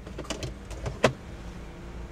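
A few sharp plastic clicks and knocks, the loudest about a second in, over the steady low hum of a 2013 Honda Freed's cabin with the engine and AC running. The clicks are likely interior fittings such as the sun visor being handled.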